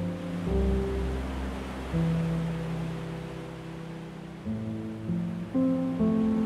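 Slow, gentle piano music, with a new chord every one to two seconds, over a steady wash of ocean waves breaking on a beach.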